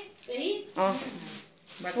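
Women talking over a short rasping rustle of wrapped clothes being packed and pressed into an open suitcase.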